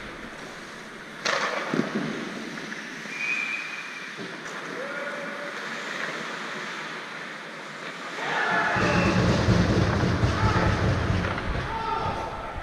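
Ice hockey play in an arena: skates scraping on the ice and sticks and puck clacking, with one sharp crack about a second in. In the last few seconds a louder, closer rumble with voices takes over.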